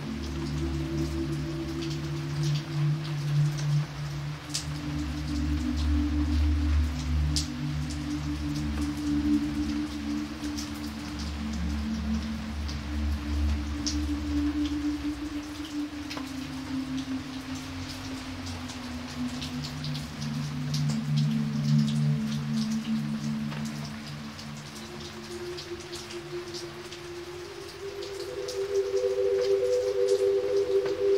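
Steady rain splashing on wet pavement, a constant hiss full of separate drop clicks. Under it, slow, sustained low music chords shift every few seconds, and the deepest bass note drops out about halfway through.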